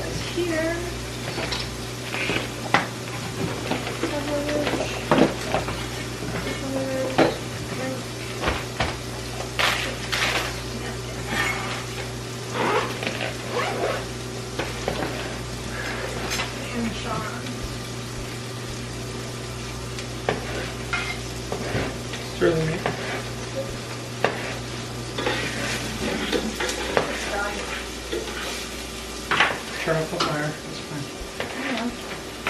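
Kitchen knife slicing sweet peppers on a countertop, with irregular knocks and clicks of the blade and of containers being handled. A steady low hum runs underneath and cuts off about 26 seconds in.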